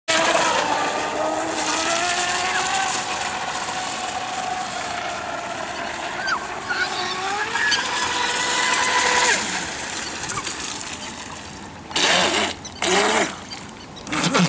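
Brushless motor of an RC catamaran speedboat, a Feigao XL 2370kv on a 4S lipo, whining at speed across the water. The pitch shifts with the throttle, climbs around eight seconds in and then drops away. Two loud rushing bursts come near the end.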